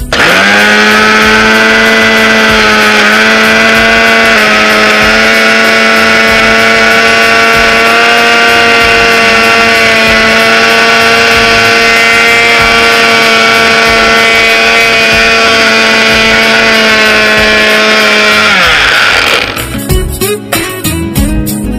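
Electric mixer grinder's small jar grinding soaked moong dal with a little water into a paste: a loud, steady motor whine. It starts suddenly, rises a little as it spins up, and near the end is switched off and winds down, falling in pitch.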